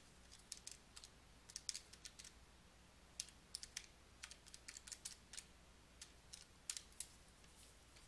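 Faint, irregular clicks of keys being pressed one after another, typing a calculation into a calculator or keypad.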